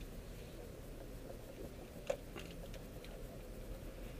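Car tyres rolling over freshly laid slurry-seal asphalt, with loose asphalt grit crackling and pattering up into the wheel wells, heard from inside the cabin. One sharp click about two seconds in.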